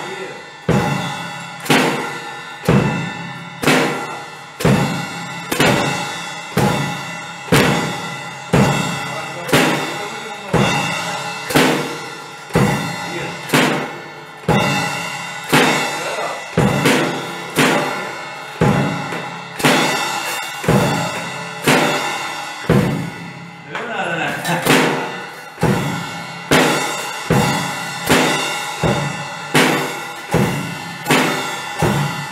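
Acoustic drum kit played slowly by a beginner: a steady pattern of single drum strokes about once a second, each ringing out and fading before the next. The pattern falters briefly a little past the middle.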